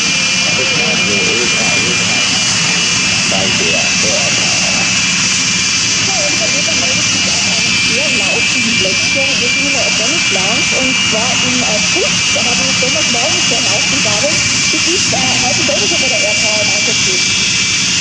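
Aermacchi MB-339's Rolls-Royce Viper turbojet whining steadily at taxi power: a loud, high whine of several close tones over a hiss, unchanging as the jet taxis by.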